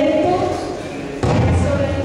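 A woman speaking through a handheld microphone, with a sudden low thump a little over a second in.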